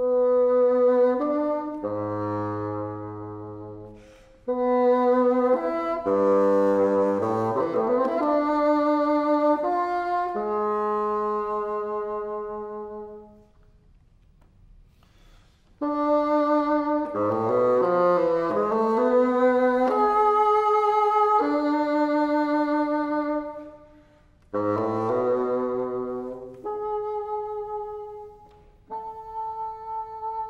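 Solo bassoon playing phrases of held notes broken by quick runs of notes, some dipping into the low register, with a pause of about two seconds near the middle and shorter breaths later on.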